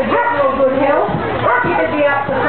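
Working kelpie sheepdog barking, with a voice talking over it.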